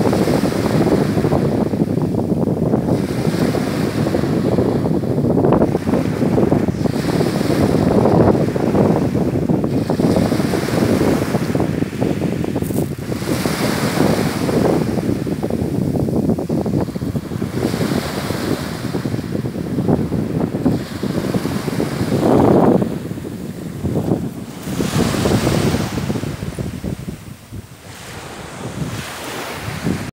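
Small waves breaking and washing up a pebble beach, swelling and easing every few seconds, with wind rumbling on the microphone.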